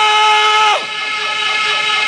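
A man's amplified voice holding one long, steady sung note in a melodic recitation. It falls away just under a second in, and a fainter steady ringing lingers after it.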